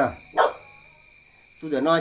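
One short, sharp animal call about half a second in, over a steady high insect chirring in the background.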